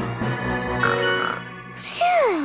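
A cartoon girl's long, low yawn, lasting about a second and a half, over light background music.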